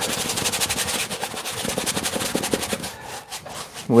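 A stiff brush scrubbing oil paint onto a stretched canvas in quick back-and-forth strokes, about ten a second, which thin out and fade near the end.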